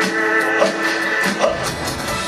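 Live country band playing an instrumental stretch on electric guitars and drum kit, with a held note that ends a little past a second in and steady drum hits.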